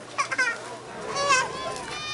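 People's voices shouting: a short call about a quarter second in, then a longer, louder, high-pitched yell about a second in.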